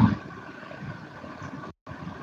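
A pause in a man's speech: his last word trails off at the start, then only a faint steady hiss remains, broken by a brief dropout to complete silence near the end.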